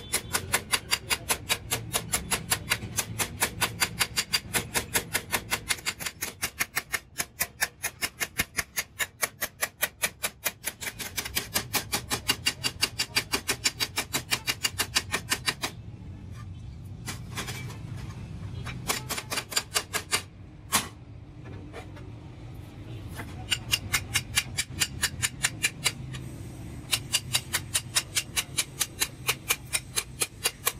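Hand hammer striking sheet steel in a steady rhythm of about three blows a second. The blows stop about halfway through, leaving a few scattered knocks and one sharp strike, then the steady hammering starts again.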